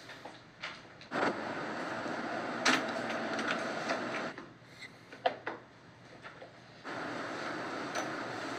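Quiet indoor scene sound from drama footage: a steady hiss of room noise that starts and stops abruptly at cuts, with a few light knocks and clicks of people moving about.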